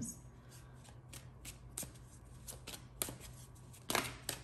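Tarot deck being shuffled by hand: an irregular run of quick, light card snaps and taps, with a sharper snap near the end.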